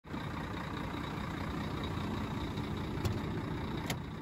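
Diesel engine of a truck tractor unit running steadily with a low rumble, with two short clicks about a second apart near the end.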